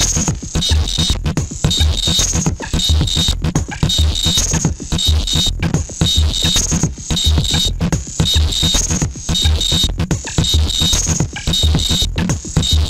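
Electronic noise-drone music from a Doepfer Eurorack modular synthesizer with a Sherman Filterbank. A sequenced, repeating pattern of bass pulses runs under gritty, filtered high noise, with frequent short stutters and breaks.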